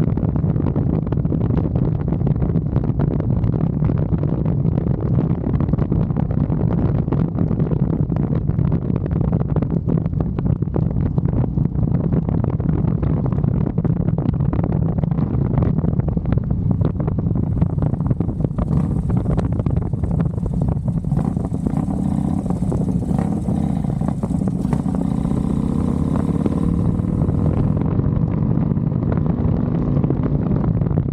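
Touring motorcycle cruising: a steady low engine rumble mixed with wind buffeting on the microphone. In the last several seconds a tone rises slowly as the engine picks up speed.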